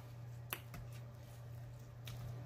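Quiet eating of fried chicken: a single sharp click about half a second in, and a fainter one just after, over a low steady hum.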